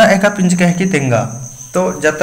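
A man speaking, with a gap just past the middle, over a steady high-pitched trill in the background.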